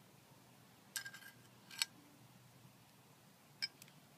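Garden trowel knocking and scraping against gravel and dirt: a clink with a short scrape about a second in, another clink near two seconds, and a quick pair of clinks near the end, over a faint steady background hum.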